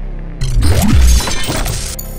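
Logo-sting sound effect: a sudden shattering crash with a deep boom hits about half a second in and dies away just before the end, over a steady electronic music bed.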